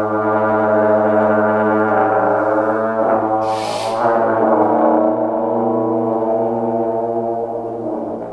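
Trombone playing long held notes over a steady low tone, the pitch sliding slightly around the middle. About three and a half seconds in there is a brief high hissing wash lasting about half a second.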